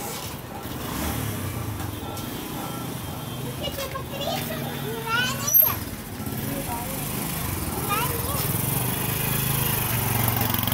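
People's voices and a young child's high rising calls, the loudest about halfway through, over a steady low hum.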